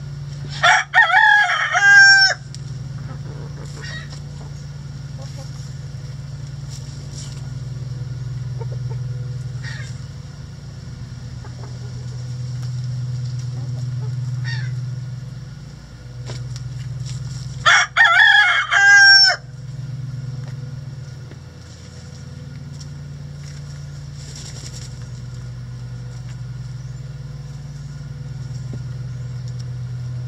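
A rooster crowing twice, each crow about a second and a half long, the first near the start and the second about seventeen seconds later.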